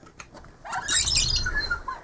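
A wooden under-bed storage drawer being pulled open, sliding out with a scraping rush that starts about half a second in and lasts just over a second.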